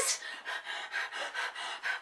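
A woman breathing in short, quick, soft breaths, about three a second.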